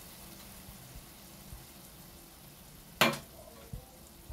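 Liver and peppers frying in a pan, sizzling faintly as a steady low hiss. A single sharp knock about three seconds in.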